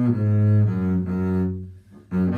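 Solo double bass played with the bow: a few sustained notes of a slow melody, changing pitch twice, the last note fading away near the end as the bow comes off the string.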